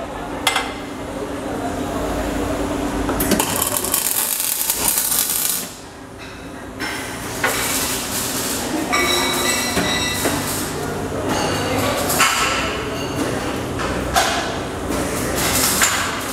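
Metalwork shop noise: steel tubes and jig clamps knocking and clanking, with a stretch of harsh hissing noise in the middle.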